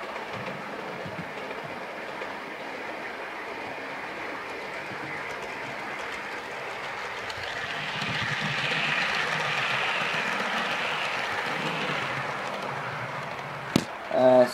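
Bachmann OO gauge Class 350 model electric train running along the track toward and past the camera, growing louder from about seven seconds in, loudest as it goes by, then fading near the end.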